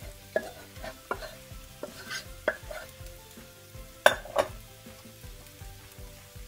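A wooden spoon scrapes cooked rice out of a small saucepan into a hot skillet, knocking sharply against the metal about seven times, loudest about four seconds in. A low sizzle comes from the hot pan beneath.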